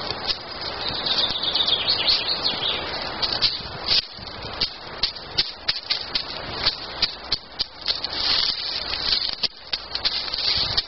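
Wood fire of dry sticks burning, crackling with many sharp, irregular pops over a steady hiss.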